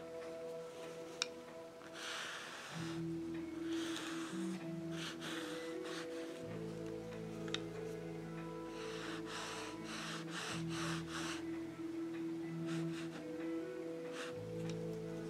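Soft background music of held chords that change every few seconds, with bursts of scratchy strokes of brush and oil pastel on a canvas, busiest about two and nine to eleven seconds in, and two sharp clicks.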